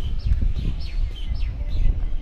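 Small birds chirping, with short high chirps that drop in pitch, several a second, over a low rumble of wind on the microphone.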